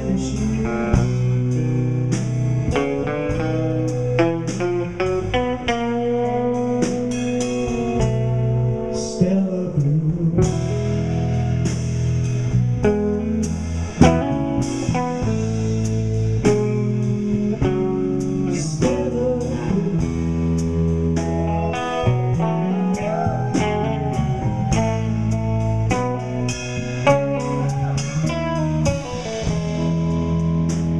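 A live rock band playing a slow ballad in an instrumental passage: electric guitar lines over electric bass and drums, with regular cymbal strokes.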